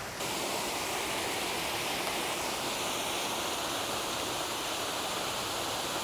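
Steady rush of falling water from a mini golf course's waterfall, starting abruptly just after the start.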